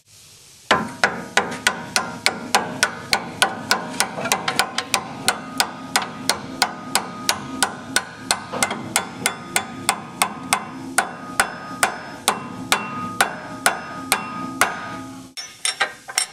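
A hammer repeatedly striking the upper camber/caster eccentric to drive it down into the steering knuckle, a steady run of blows at roughly three a second with a metallic ring after each. The blows stop shortly before the end.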